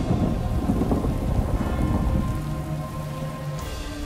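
Heavy pouring water with a deep low rumble underneath, and faint steady low tones held beneath it.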